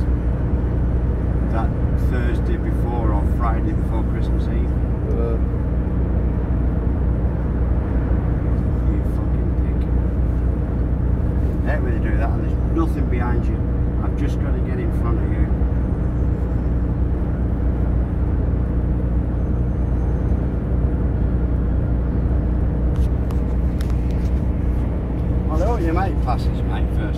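Inside a lorry cab on the move: a steady low drone of the diesel engine and road noise, with a constant hum.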